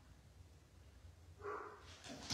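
Near silence, then about a second and a half in a dog starts barking.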